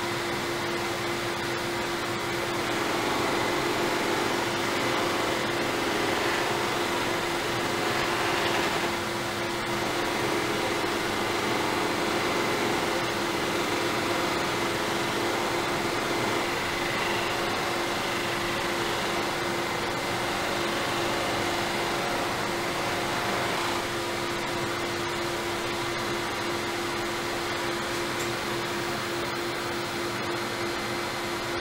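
Lathe running a soft cloth buffing mop against a wooden platter, a steady whir with a constant hum, mixed with the fan of a powered face-shield respirator. The noise swells slightly at times as the wood is pressed to the mop.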